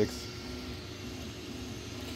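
Creality Ender 3 V3 SE 3D printer running a print: a steady fan hum with the stepper motors giving short, repeated pitched tones as the print head moves.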